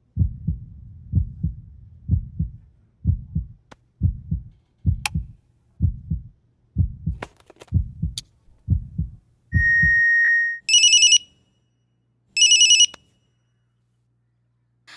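Heartbeat sound effect, a low double thump about once a second, ending in a single steady electronic beep. Then a phone rings twice in short trilling bursts.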